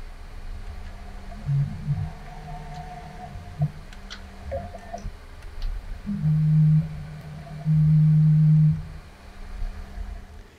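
Tormach PCNC 440 mill with its spindle running at a steady hum while the axis motors whine in uneven, pitched spurts as the hand wheel jogs the axes. The loudest whines come in the second half, two held tones about half a second and a second long, as the head is brought down toward the stock.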